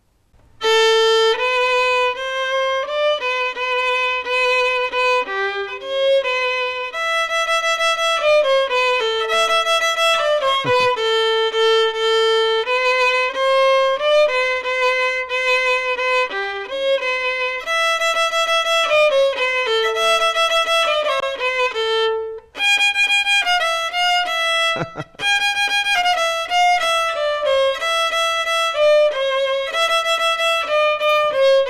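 Solo violin playing the melody of a currently popular song, a single line of bowed notes that starts about half a second in, with two short breaks in the second half.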